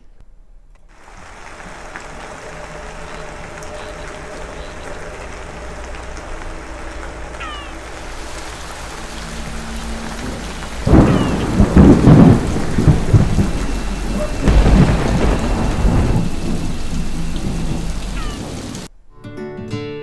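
Thunderstorm sound effect: steady heavy rain that builds, with two loud rolls of thunder about eleven and fourteen seconds in, cutting off suddenly near the end.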